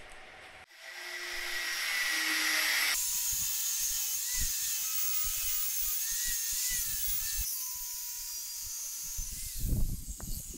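Angle grinder spinning up and grinding a cast metal dragon ornament, a steady high-pitched whine that wavers as the disc bites. A few sharp knocks come near the end.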